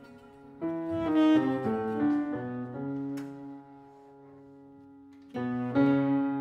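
Live improvised chamber-jazz music from piano, saxophone and cello: a phrase of held, shifting notes starts about half a second in, thins to a single low held tone in the middle, and the ensemble comes back in loudly near the end.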